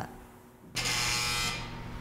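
Lee Dan IR-105 apartment intercom buzzing: one steady buzz of under a second that starts suddenly a little way in and cuts off, the call signal of someone ringing from the building door.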